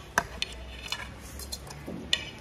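A metal fork clinking and scraping against a ceramic plate while noodles are eaten: a few short, sharp clicks, the loudest just after the start.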